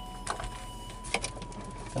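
A few light clicks and knocks of handling as a cordless drill/driver is set down, over a faint steady high-pitched tone.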